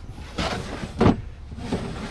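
Handling noise from the grey plastic storage boxes: a short rustle, then a sharp knock about a second in, followed by lighter clatter.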